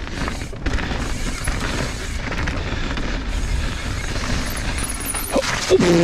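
Mountain bike descending a dirt trail at speed: a steady rumble of wind on the microphone with tyre noise and scattered knocks from the bike over bumps. Near the end comes a short cry that drops sharply in pitch.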